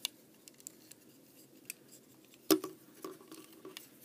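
Plastic clicks and snaps of a Hasbro Transformers Prime Beast Hunters Voyager Class Sharkticon Megatron figure's joints and parts being moved by hand while it is transformed. The clicks come irregularly, with the loudest snap about two and a half seconds in.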